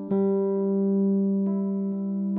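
Background keyboard music: sustained chords ringing over a steady held low note, with a few new notes struck now and then.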